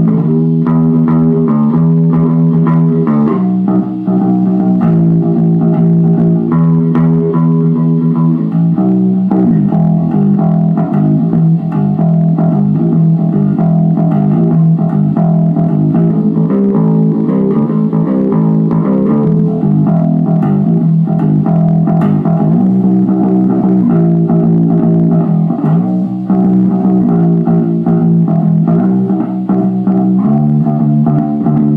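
Homemade two-string bass built from a canoe paddle, plucked in a boogie bass line: a short riff repeating, moving to higher notes through the middle and then returning to the opening riff.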